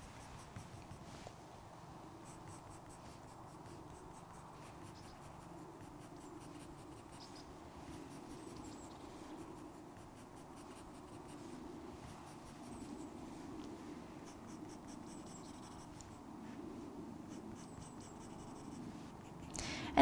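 Soft 4B graphite pencil scratching faintly on paper in many short, repeated shading strokes, building up fur texture.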